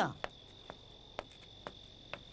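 Crickets trilling in one steady high note, with light footsteps about twice a second.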